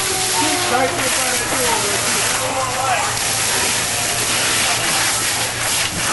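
Fire hose stream spraying into a burning building: a steady rushing hiss of water. Faint voices sound behind it.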